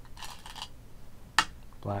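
A short rustle, then a single sharp click about one and a half seconds in: a Go stone set down on a wooden Go board.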